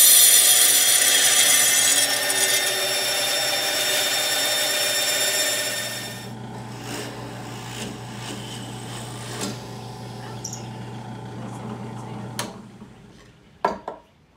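Bench band saw cutting plywood, a loud high-pitched whine and hiss, for about the first six seconds. Then a quieter steady motor hum with scattered clicks as a benchtop drill press bores holes in the plywood, stopping shortly before the end.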